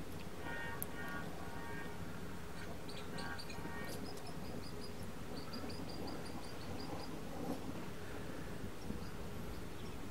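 Small birds chirping in short repeated series of quick high notes, over a steady low hum.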